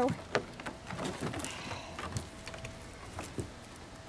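Iguanas scrambling over wooden deck boards to a bowl of greens: scattered light clicks and scratches of claws on wood, with one sharper click shortly after the start.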